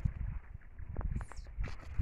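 Footsteps squelching on wet, muddy ground, with irregular soft thuds and the rustle of corn and rice leaves brushing past.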